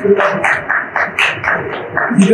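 Hand claps in quick succession, about five sharp claps a second.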